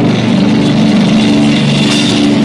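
Live heavy rock band playing loud, with low distorted notes held steadily and little drumming. The sound is harsh and crushed from an old phone microphone and heavy compression.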